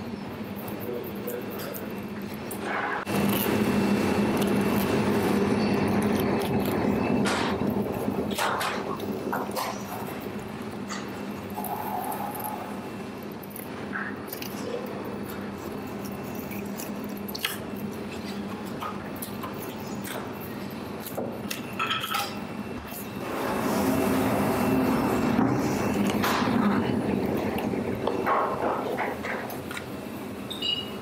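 A chef's knife knocks and clicks against a whole sea bass and a plastic cutting board as the fish is cut open and cleaned, over a steady kitchen hum. Longer stretches of louder rasping noise come about three seconds in and again about twenty-three seconds in.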